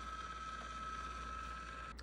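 YoLink smart water shutoff valve's motor running as it drives the valve to the closed position: a faint steady high whine that cuts off just before the end.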